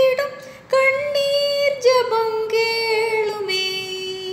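A high solo voice singing a slow Tamil Christian hymn unaccompanied, in long held notes; it breaks off briefly about half a second in, then ends on a long, slightly falling note.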